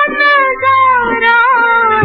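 Female playback singer holding a long sung note that wavers slightly in pitch, over the instrumental accompaniment of a 1950s Hindi film song.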